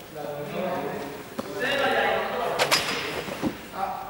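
Voices of a group of young men talking in a large, echoing sports hall, with a sharp click about one and a half seconds in and another near the middle.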